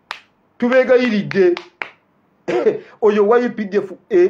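A man talking animatedly, broken by two sharp snaps or clicks, one right at the start and one a little under two seconds in.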